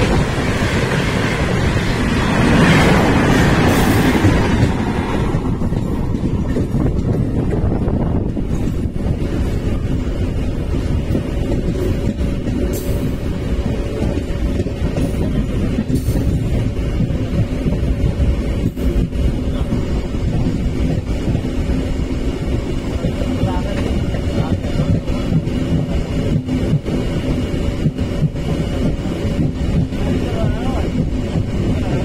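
Running noise of a passenger train heard from its own open window: a louder rush of wind for the first five seconds while a train of coaches on the next track passes close by, then a steady rumble of wheels on rails with a faint hum.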